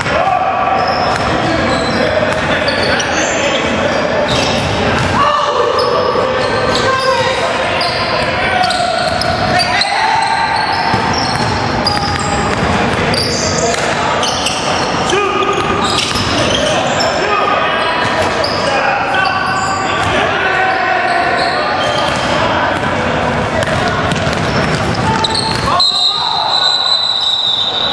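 Indoor basketball game on a hardwood gym floor: a basketball dribbled and bounced, sneakers squeaking in many short squeals, and players calling out, all echoing in the large gym.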